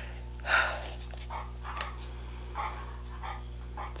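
A dog panting and snuffling in short irregular breaths, the strongest about half a second in. A steady low electrical hum runs underneath.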